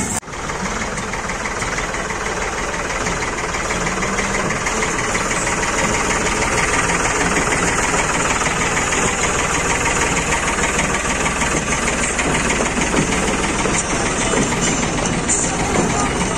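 Diesel engine of a Farmtrac tractor towing a water tank, running steadily at low speed close to the microphone.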